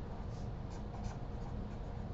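Felt-tip marker writing on paper: a few short strokes over a low steady hum.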